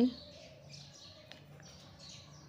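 Faint high chirping in the background over low room noise, with one light tick about halfway through.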